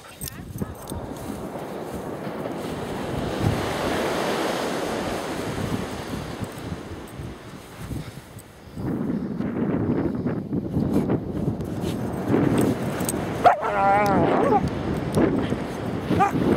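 Puppies digging in loose beach sand under a steady rush of wind on the microphone. A short wavering call sounds near the end.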